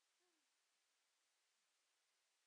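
Near silence: room tone, with one very faint, short tone falling in pitch about a quarter second in.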